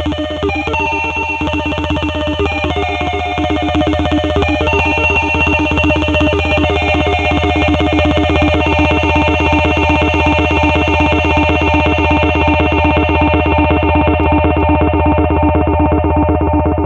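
Live psychedelic rock band music: a steady low drone under a fast, even, buzzy pulse, with held higher notes that step to new pitches every few seconds. The top end grows duller over the last few seconds.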